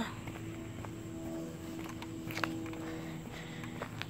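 Footsteps in sneakers on a cracked concrete path, a few faint scuffs, over a faint steady hum.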